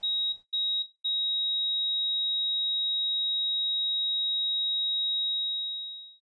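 A high electronic tone, part of the trailer's sound design: two short beeps, then from about a second in one long steady tone that fades out near the end.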